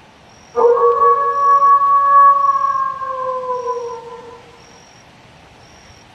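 A single long canine howl that starts suddenly, holds one steady pitch for about two and a half seconds, then sags in pitch and fades away.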